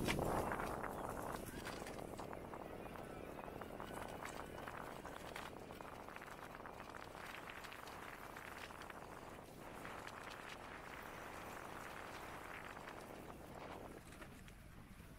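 A bicycle riding over a rough grass and dirt track: a steady rumble of tyres with many small irregular rattles and knocks as the bike bounces over the bumps. It is loudest at the start and settles a little quieter after a couple of seconds.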